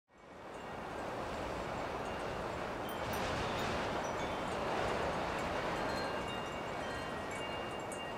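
Faint wind chimes tinkling over a steady rush of wind, fading in at the start and swelling slightly in the middle.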